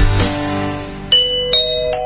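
A song fades out, and then a bell-like chime plays three notes in quick succession, rising in pitch, each left ringing.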